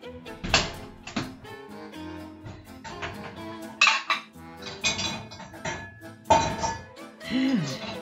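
Crockery clinking and clattering several times as plates are handled, over steady background music.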